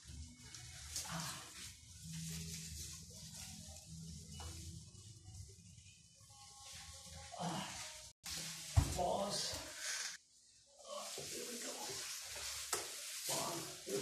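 A man's strained, wordless vocal sounds of effort and shuffling movement as he lifts and carries a very heavy potted plant indoors.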